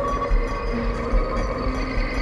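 Live-coded electronic music: a deep pulsing sub bass under sustained, droning synthetic tones, with short held notes that shift in pitch and a dub-style echo.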